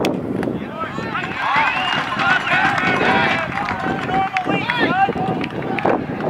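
Several people shouting and calling out at once, raised voices overlapping with no clear words.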